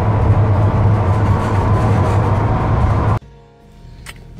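Loud steady road and wind rumble of a vehicle driving at speed, heard from inside the cab, cutting off abruptly about three seconds in.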